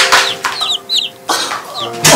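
Comic sound effect of bird calls: several short, high, falling chirps over a held chord of background music.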